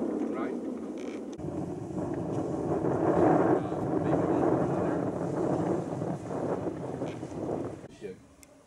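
A small tour boat's motor runs steadily under the loud rush of wind on the microphone as the boat moves along the shore. The sound shifts about a second and a half in.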